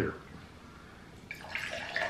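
Energy drink poured from a can into a glass, starting about a second in: a steady splash of liquid into the glass.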